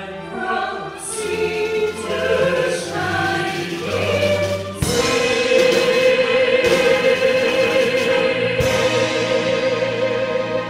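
Male and female vocalists sing with microphones over orchestral accompaniment. About halfway through, the voices hold one long note with vibrato.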